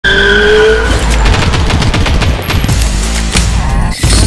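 Loud intro sound effects. A slightly rising tone lasts about a second over a heavy low rumble, then a rapid clatter of sharp cracks follows.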